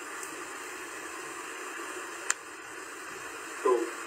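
Steady hiss of a telephone line played through a television speaker, with one sharp click a little over two seconds in. A man's voice starts again near the end.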